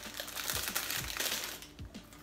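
Plastic bag inside a cracker box crinkling as a hand reaches in and pulls out crackers: a dense crackle that dies away near the end.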